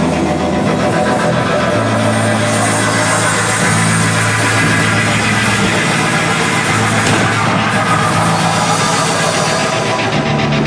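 Loud, distorted garage-punk band playing live: a low droning bass line stepping between held notes every second or two under a dense, distorted wall of noise.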